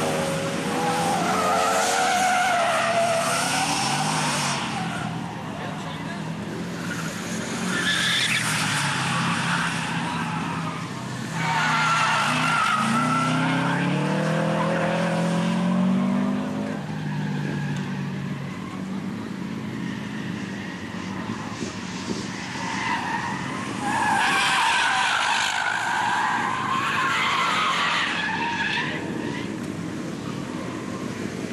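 Track-day cars taking a corner one after another, engines revving and tyres squealing as they slide through. There are three loud passes: one at the start, one about twelve seconds in and one about twenty-four seconds in.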